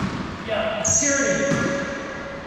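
A paddleball bouncing once on the hardwood floor of an enclosed racquetball court right at the start, the impact echoing off the walls. About half a second later a drawn-out high squeal, falling slightly in pitch, lasts about a second.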